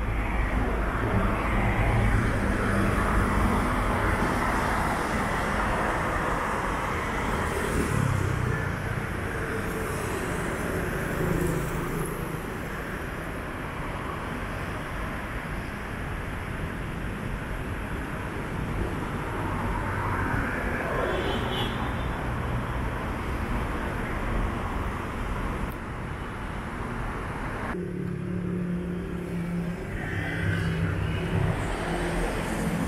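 City road traffic: cars driving past in waves that swell and fade, over a steady low hum. Near the end the traffic hiss falls away and only the low hum remains.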